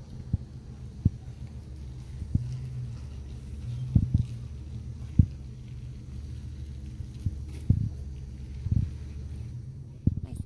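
Handling noise on a handheld camera's microphone: a steady low rumble with about eight dull, irregular thumps, the loudest about four and five seconds in.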